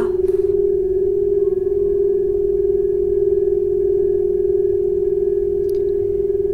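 A crystal singing bowl rings one steady, sustained tone with a slight regular wobble, pitched near G, with a faint higher tone above it.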